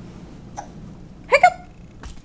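A toddler's short hiccup, a brief 'hic' rising in pitch, about one and a half seconds in.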